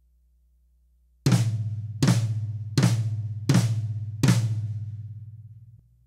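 Five evenly spaced flams on a drum kit, about one every three-quarters of a second. Each flam is split between a tom and the snare drum, with both strokes played as accents. The tom rings low after each hit and fades out shortly before the end.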